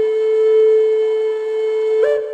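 Flute holding one long, steady note in the intro music.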